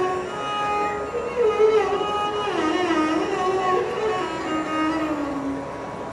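Carnatic violin playing a single slow melodic line, sliding and wavering between notes with gamaka ornaments and winding down in pitch toward the end.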